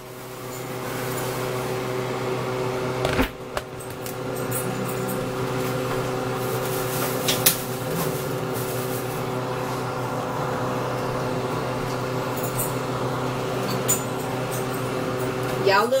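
A steady hum from a kitchen appliance motor or fan, holding several steady tones, with a few sharp clinks of cookware over it: one about three seconds in, another near the middle and one near the end.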